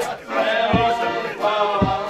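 A group of men singing together in a chant-like folk song, voices held on long notes, with a low thump about once a second keeping the beat.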